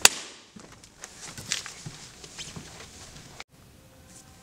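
A sharp knock right at the start, then faint scattered knocks and rustling as a man gets up out of a theatre seat and moves off; the sound cuts off suddenly near the end, leaving room tone.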